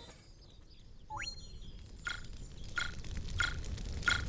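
Cartoon sound effects: a quick falling whistle-like glide about a second in, then short blips about two-thirds of a second apart over a low rumble that swells.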